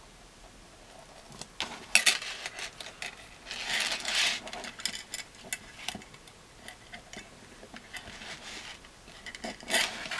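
Handling noise of a small metal toy chain and plastic figure parts: light clinks and clicks, a sharp click about two seconds in, a short rattle of chain links around four seconds, and more clicks near the end.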